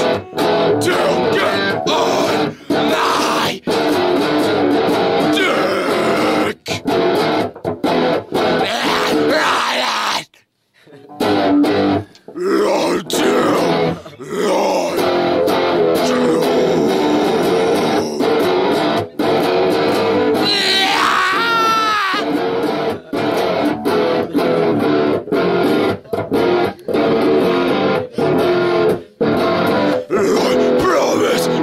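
A guitar strummed continuously, stopping briefly about ten seconds in, with a man's voice singing or shouting over it.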